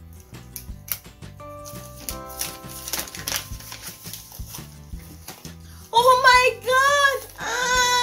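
Paper padded mailer being cut and torn open, with crinkling and rustling, over background music with a steady beat. About six seconds in, a woman breaks into a loud, high-pitched excited cry and laugh as the package opens.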